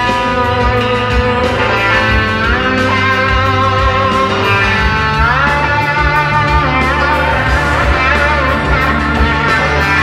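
Live rock band playing an instrumental passage: a lead electric guitar with notes that glide upward, over bass and drums.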